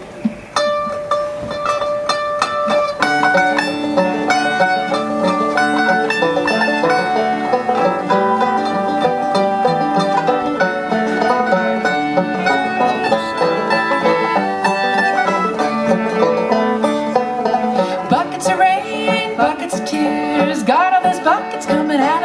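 Bluegrass band playing an instrumental intro on fiddle, banjo, acoustic guitar and mandolin. A single held note opens it, and the full band comes in about three seconds in, with sliding notes near the end.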